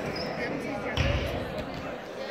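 A basketball bouncing once on a wooden gym floor about a second in, a single low thump that rings briefly in the hall, over a background of voices and chatter.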